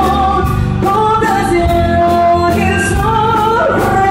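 A Tejano band playing live, with a woman singing the lead and holding long notes over bass guitar and drums.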